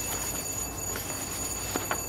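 Room tone in a pause between speakers: a steady low hum with thin, constant high-pitched electronic whine tones and a faint click near the end.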